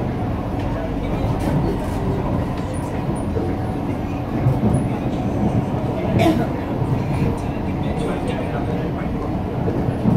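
Steady running noise of an MRT train heard from inside the carriage: low rumble with wheel-on-rail noise as it travels along the elevated track. There is a brief sharp click about six seconds in.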